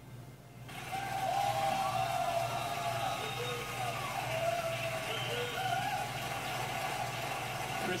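The singing stops right at the start. About a second in, an audience's applause and cheering rise and carry on, with drawn-out whoops over the clapping, as if heard through a television's speaker.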